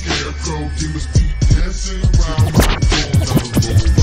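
Memphis rap from a chopped-and-screwed style DJ mixtape: a dark hip hop beat with deep bass and sharp, repeated percussion hits.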